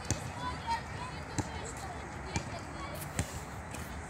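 Basketball bouncing on an asphalt court as it is dribbled: about five sharp bounces, spaced unevenly, less than a second apart, with faint voices in the background.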